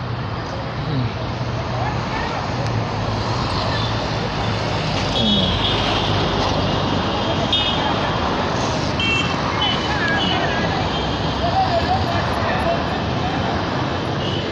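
Steady street traffic noise with a vehicle engine humming low through the first few seconds.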